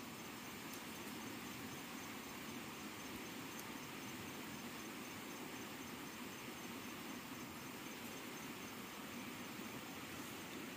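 Faint, steady outdoor background of insects chirring in grass: an even hiss with a faint high pulsing note.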